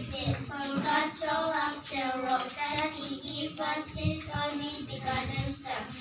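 Young girls' voices reciting a Bible verse together in a sing-song chant, heard through microphones.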